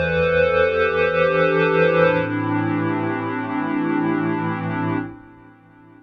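Xpand!2 soft-synth 'Synthetic Woods' pad patch playing sustained chords. The chord changes about two seconds in, and the sound fades out near the end.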